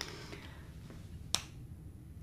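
A single sharp click a little past halfway, over faint low room hum.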